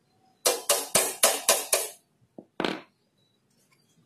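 Hand tool working on metal parts at a motorcycle's front brake: a quick run of six sharp strokes, about four a second, then two more a moment later.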